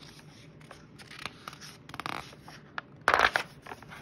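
Page of a hardcover picture book being turned by hand: soft paper rustling and rubbing, with a louder swish about three seconds in as the page comes over and is smoothed flat.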